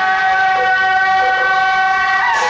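Suona shawms of a procession music troupe holding one steady, loud note together.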